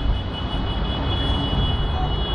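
Electric commuter train running close by: a steady low rumble with a continuous high-pitched whine.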